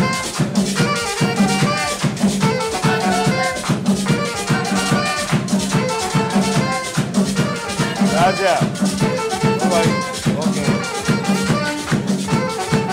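Live band playing a Christmas aguinaldo with a steady, fast dance beat: a saxophone carries the melody over a scraped metal güira and a hand drum, with a quick up-and-down run about eight seconds in.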